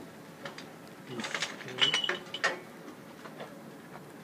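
A quick run of sharp clicks and rattles starting about a second in and lasting about a second and a half, with one brief high squeak in the middle.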